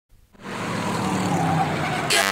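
A vehicle engine running, fading in about half a second in and slowly growing louder.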